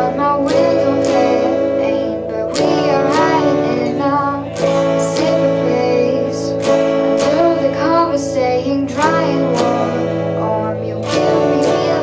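A girl singing a song while strumming chords on a Squier electric guitar, with strums about every half second under the vocal line.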